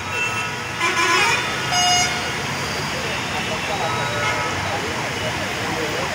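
Heavy traffic with several vehicle horns honking, loudest about a second in and again at two seconds, over a steady hiss of vehicles moving through floodwater.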